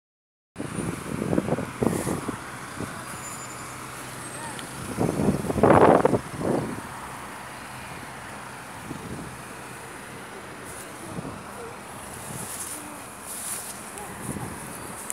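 Road traffic on a busy multi-lane city road, a steady noise of passing cars and buses, with louder surges about a second in and about six seconds in.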